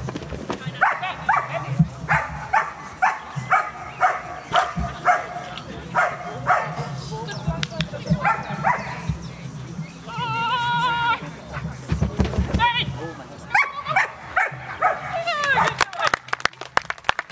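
A shepherd dog barking excitedly while it runs an agility course: a quick series of short barks about two or three a second for the first several seconds, then more barks in bursts later on.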